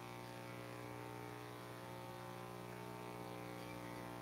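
Faint, steady electrical mains hum with a buzz of many even overtones, unchanging throughout.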